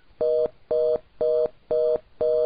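Fast busy (reorder) tone from a Cisco IP Communicator softphone: a two-note tone beeping about twice a second in even on-off beats. It signals that the call has failed, because with the DSP farm shut down no transcoder is available for the call.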